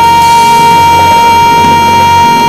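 A woman singing into a microphone, holding one long, high note without a break over backing music.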